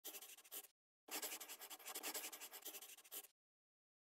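Faint scratching of a drawing tool across a surface, as if sketching a line drawing. It comes as a short burst of quick strokes, then after a brief gap a longer run of strokes lasting about two seconds, and stops cleanly.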